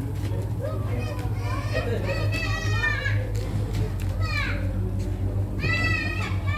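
Children's high voices calling and squealing in the background, one call sliding down in pitch about four seconds in, over a steady low hum.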